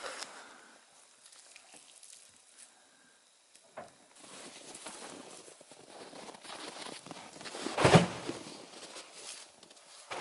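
Boots crunching in snow as people walk about, starting a few seconds in, with one loud heavy thump about two seconds before the end. Before the steps begin there are only faint handling sounds.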